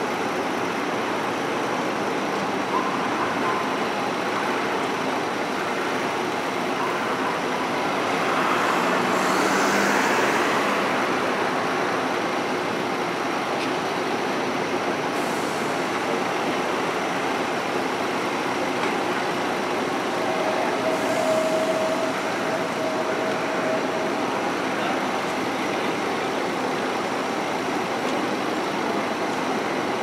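Steady city traffic noise around a double-decker diesel bus idling at a stop. A passing vehicle swells and fades about a third of the way in. A steady high tone sounds for a few seconds about two-thirds of the way through.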